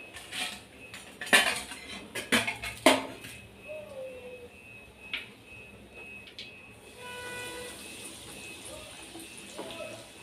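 Metal kitchen utensils clinking against a metal pan: several sharp clinks in the first three seconds, then a few fainter ones. From about seven seconds in, a faint steady hum of a few tones.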